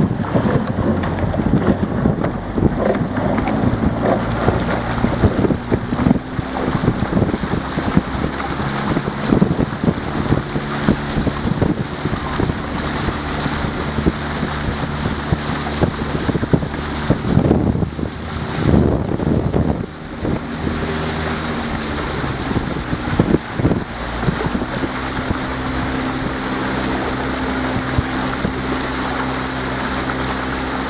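A motor launch's engine running steadily, its pitch shifting a few times, with wind buffeting the microphone and water noise from the moving boat.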